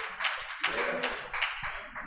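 Faint voices calling out "yeah" in a hall, with a few soft scattered taps.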